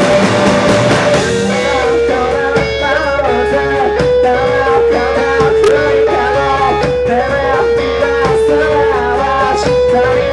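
A live three-piece rock band playing loud electric guitar music. A dense, distorted wash gives way about a second in to a repeating picked electric guitar figure over steady drum hits.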